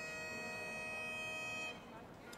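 Bagpipes holding one long, steady note, which fades out near the end.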